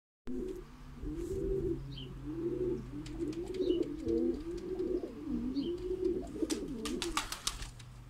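Male domestic pigeon cooing in courtship display, one low, rolling coo after another with hardly a break. A few sharp clicks come near the end.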